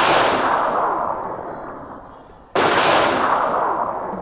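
Two loud crashing bursts, each starting suddenly and dying away slowly over about two and a half seconds. The second comes about two and a half seconds after the first.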